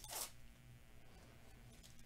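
Plastic wrapper of a Topps Series 1 baseball card pack ripped open in one short tear at the very start, followed by faint handling of the pack.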